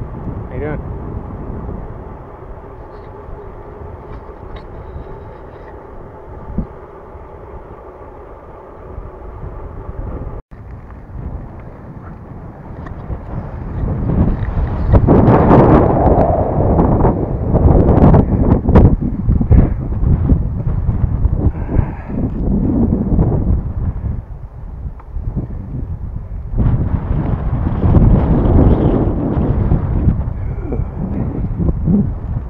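Wind buffeting the microphone of a camera on a moving bicycle, mixed with road and tyre noise. It turns much louder and gustier after a cut about ten seconds in.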